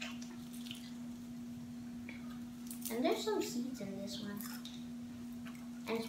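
Close-up eating sounds of people chewing fried chicken: small wet mouth clicks and smacks, with a short mumbled voice about halfway through. A steady low hum runs underneath.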